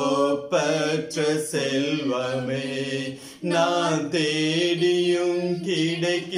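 A man and a woman singing a slow worship song together in long, held notes, with a short break about three seconds in.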